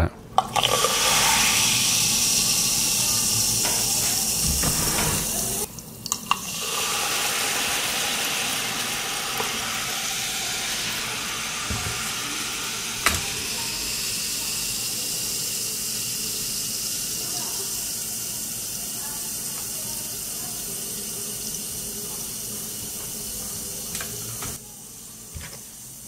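Citric acid and baking soda reacting in a glass of water, a steady fizzing hiss of bubbles that breaks off briefly about six seconds in and slowly fades toward the end. A single click about halfway through.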